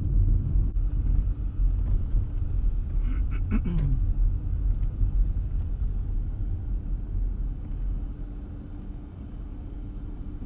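Cabin noise of a Volkswagen car being driven: a steady low rumble of engine and road, heard from inside, easing off a little near the end. A single cough about four seconds in.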